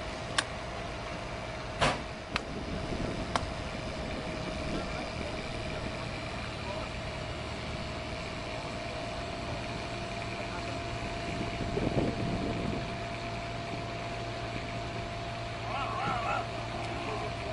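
A few sharp clicks and knocks from a Newmar motor coach's entry door and latch being worked in the first few seconds. After that a steady low mechanical hum with a constant tone runs on.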